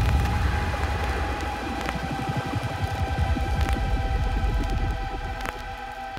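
Hardcore electronic music in a breakdown: a sustained synth chord over a fast, throbbing bass pulse, with a few sparse percussive hits. The level slowly fades down.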